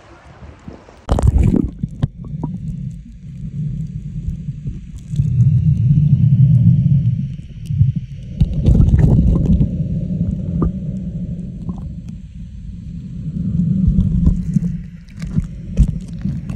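Muffled underwater sound from a submerged camera: a sudden burst about a second in as it goes under, then low rushing surges of moving water that swell and fade several times, with scattered small clicks and bubbles.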